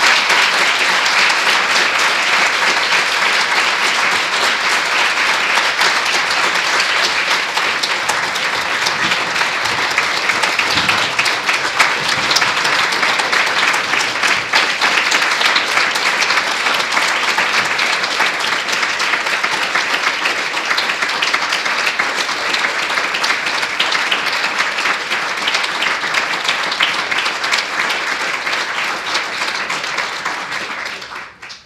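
A lecture-hall audience applauding steadily and at length.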